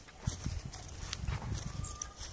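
Footsteps walking over grass and dirt: a series of soft, low thuds, several a second.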